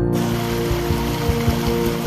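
Rushing water of a rocky mountain creek, an even hiss that comes in suddenly just after the start, layered over soft new-age background music with sustained tones.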